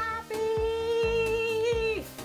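A woman's voice holding one long, steady sung note in excited delight, over background music with a steady beat.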